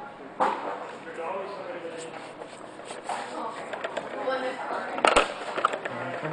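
Indistinct talking of people in a room, with a sharp knock about half a second in and a louder knock about five seconds in.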